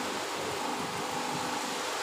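Steady hiss of background noise with no voice, as from a live microphone and public-address system in an open tent.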